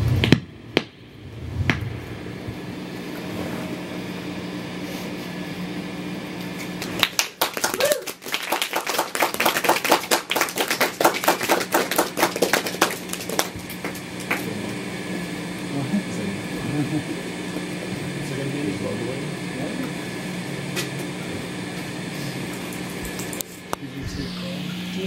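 A steady electrical hum, with a stretch of rapid crackling clicks from about seven to fourteen seconds in, and faint voices in the background.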